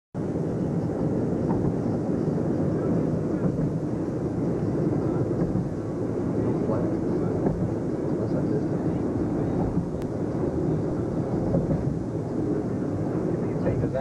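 Steady road and engine noise of a moving car, heard inside the cabin as an even low rumble.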